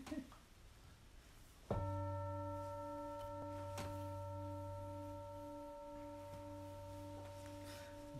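A singing bowl struck once about two seconds in, ringing with several steady tones; one of its low tones wavers in a steady pulse, and the ring slowly fades.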